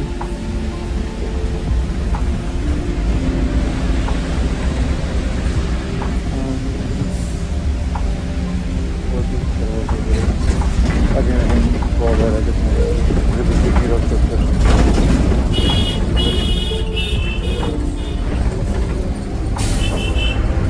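Steady low engine and road rumble heard from inside a moving bus. A horn beeps in several short blasts about three-quarters of the way through.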